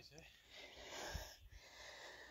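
Heavy breathing of a winded hiker: long noisy breaths about a second apart, with a low thump about a second in.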